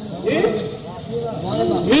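A voice speaking in drawn-out, rising and falling tones, over a steady hiss.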